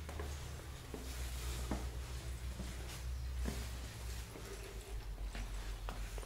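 Quiet ambience with a steady low rumble and a few faint, scattered knocks, as of footsteps on a stone floor.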